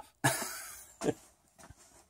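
A man coughs once, a breathy burst that fades over about half a second. A shorter sharp burst follows about a second in, then a few faint clicks.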